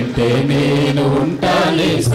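A man's voice singing a slow Telugu devotional hymn in a chant-like style, holding long, sustained notes.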